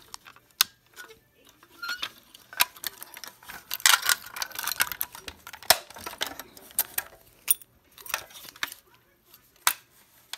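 Sharp plastic clicks and knocks from a Fire-Lite BG-12SL fire alarm pull station being handled and opened by hand, with a denser stretch of clatter and rustling about four seconds in.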